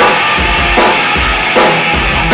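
Live instrumental rock: electric guitar played over a Sonor drum kit, with heavy drum and cymbal hits landing about every three-quarters of a second and bass drum beats between them.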